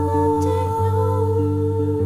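A hummed vocal note held steady over electric guitar, with lower guitar notes changing about every half second beneath it.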